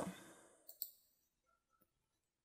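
Near silence: a breath trailing off at the start, then two faint clicks just under a second in.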